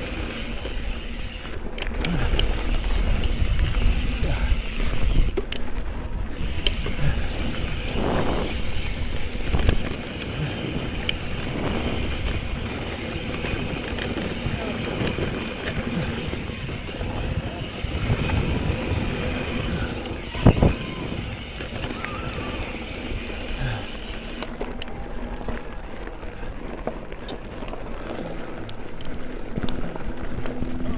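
Specialized Camber 650b mountain bike ridden fast on dirt singletrack: tyres on dirt, chain and frame rattling over bumps, and wind on the microphone, with a sharp knock about twenty seconds in.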